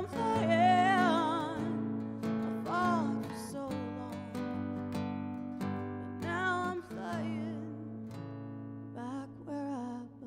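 A woman singing a slow folk song with wide vibrato, accompanying herself on a strummed acoustic guitar.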